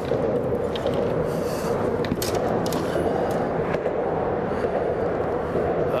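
Steady rolling rumble of car traffic crossing the bridge deck overhead, with a few light clicks scattered through it.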